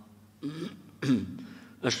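A man clearing his throat twice, the second time louder, before he resumes speaking near the end.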